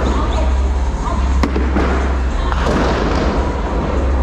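Bowling ball thrown down a lane: a sharp knock about a second and a half in as it lands, followed by a rushing, clattering stretch.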